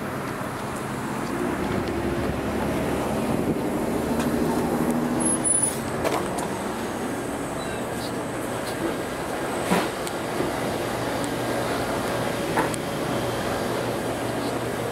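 Street traffic at an intersection: car engines running and passing in the first half. After that comes a quieter steady background with a few short knocks.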